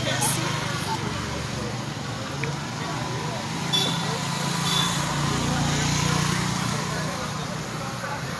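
Indistinct voices over a steady low hum and outdoor background noise, with two short high tones about a second apart near the middle.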